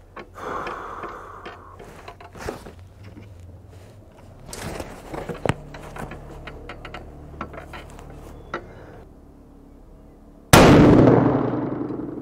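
A single shot from a Howa 1500 bolt-action rifle in 6.5 PRC, about ten and a half seconds in, its report fading over about a second and a half. Before it there are only faint small ticks and handling noises.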